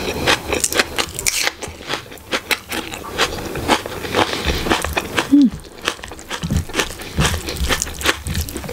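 Close-miked eating: wet chewing and mouth clicks of chicken curry and rice, with fingers squishing through the rice in the bowl. A short falling hum comes about five seconds in.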